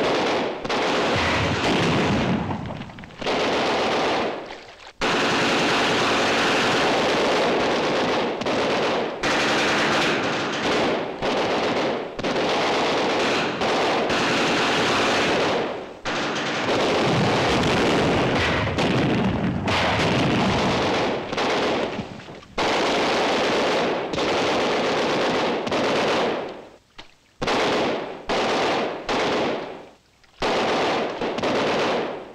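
Automatic machine-gun fire in long, sustained bursts, the longest running about ten seconds, broken by short pauses. Near the end it comes in shorter, choppier bursts.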